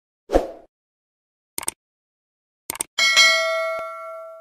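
Subscribe-button animation sound effects: a short soft thump, two quick clicks about a second apart, then a bright bell ding that rings on in several tones and slowly fades.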